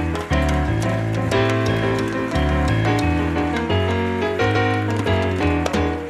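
Electric keyboard playing chords and a moving bass line with Uruguayan candombe drums (tambor repique, chico and piano) and a drum kit, in an instrumental passage of a live candombe song. Sharp drum strokes cut through the sustained keyboard notes.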